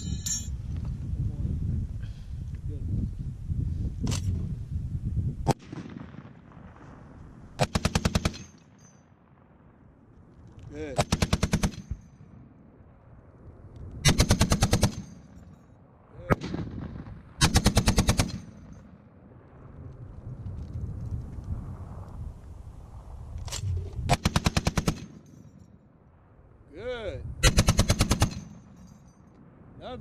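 M2 Browning .50 caliber heavy machine gun firing six short bursts of rapid shots, each under a second long and a few seconds apart. Before the first burst there are a couple of sharp clacks.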